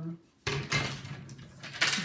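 Handling noise: hard plastic parts and small objects being moved and knocked together, a run of small clicks and rustles ending in a sharper clack.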